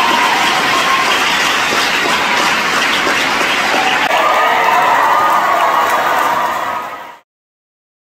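Crowd applauding steadily with some cheering voices mixed in, cutting off abruptly about seven seconds in.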